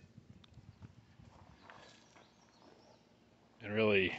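Faint small knocks and rustling, then a man's short vocal sound, like a drawn-out 'uh', near the end.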